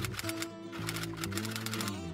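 Background music with a rapid typewriter key-clicking sound effect over it, the clicks pausing briefly about half a second in.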